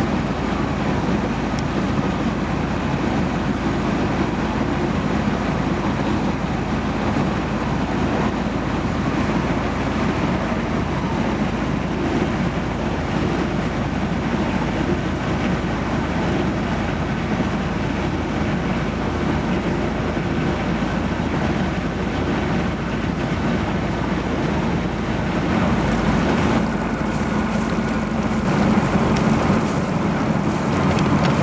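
Sailboat's freshly rebuilt inboard diesel engine running steadily under way, a low drone mixed with wind on the microphone and water noise. The drone shifts slightly near the end.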